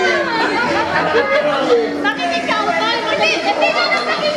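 A group of children and adults chattering at once, many voices overlapping with no single speaker standing out.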